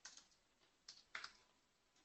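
A few faint keystrokes on a computer keyboard as a password is typed in, about four short clicks spread over two seconds.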